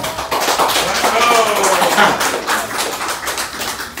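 A group clapping rapidly in a dense run of claps, with excited voices overlapping.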